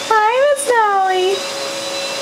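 Two high-pitched wailing vocal calls in quick succession, each rising briefly then sliding down in pitch, ending about halfway through, over a faint steady tone.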